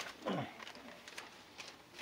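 A person's short wordless vocal sound, falling steeply in pitch, like a groan or a laugh, followed by a few faint clicks.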